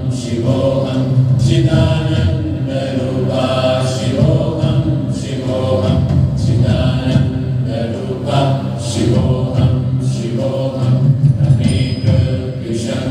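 Several men singing a slow devotional chant together, their voices sustained over a steady low hum.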